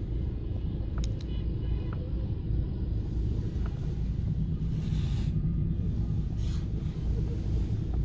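Steady low rumble of a car's engine and tyres heard from inside the cabin while driving slowly in city traffic, with a brief rush of passing-traffic noise about five seconds in.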